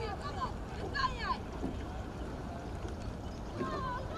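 Distant shouting voices, in short rising and falling calls that come and go over a steady low rumble of wind on the microphone.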